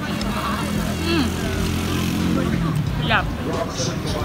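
Voices of people at an outdoor eating area, with a short higher-pitched voice about three seconds in, over a steady low drone.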